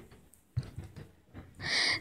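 Faint low bumps, then near the end a short, louder intake of breath just before speaking resumes.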